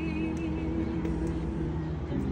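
A cappella vocal group singing, holding sustained low chords through the moment with no instruments.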